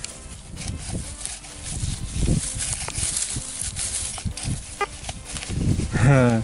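Hands rummaging through dry grass and loose soil, rustling and crumbling with irregular soft thumps and small clicks from handling close to the microphone.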